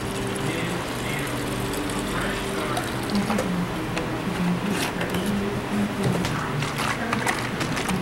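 Tap water running steadily into a one-gallon plastic jug as it is topped off, with a few light clicks as the cap is handled.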